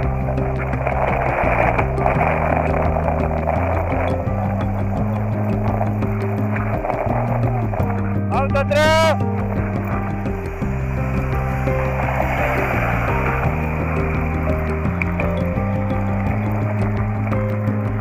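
Background music with a bass line changing notes every second or so, and a brief rising sweep about halfway through.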